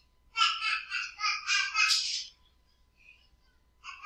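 A child's high-pitched voice in the background for about two seconds, thin and distant, then fading out.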